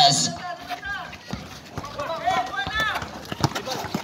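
A basketball being dribbled on an outdoor concrete court, with irregular knocks under faint shouting voices of players and onlookers.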